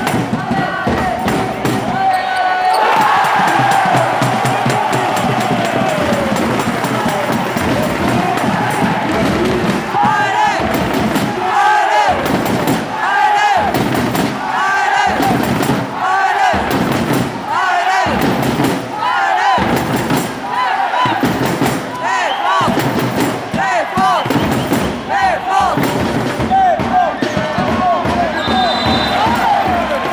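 Basketball arena sound: music with voices pulsing about once every three-quarters of a second, over steady crowd noise and the bounces of a dribbled basketball.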